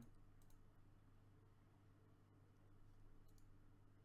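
Near silence with a low steady hum. A few faint computer-mouse clicks sound, one about half a second in and a couple more near the end.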